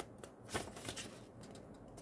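Paper instruction leaflet rustling and crinkling as its pages are turned by hand, loudest about half a second in, with a few lighter crinkles after.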